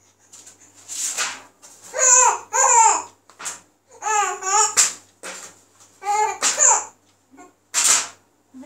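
Baby laughing and babbling in a series of short, high-pitched bursts.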